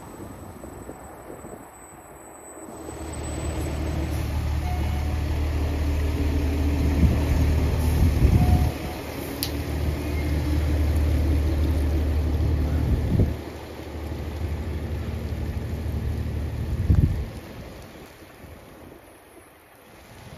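A fire engine's diesel engine passing slowly and close by, a low steady drone that builds about three seconds in and fades out near the end, over the hiss of tyres on a wet road.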